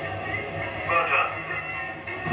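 Film soundtrack: background music with indistinct voices and a steady low hum.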